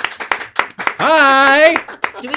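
Quick hand claps through the first second. Then a loud, long held vocal cheer with a wavering pitch fills most of the second half.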